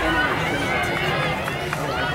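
Trackside crowd of spectators, many voices talking and calling out at once.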